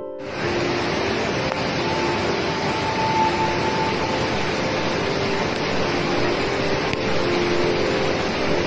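A loud, steady rushing noise starts about half a second in and runs without a break, with soft background music tones underneath.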